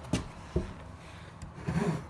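An aluminium spirit level knocking twice against wooden shim strips, just after the start and again about half a second in, and rubbing on them as it is lifted and turned to check level the other way.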